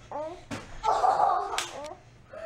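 Young children's voices calling out during rough play, with a sharp smack about half a second in and another shortly before the end.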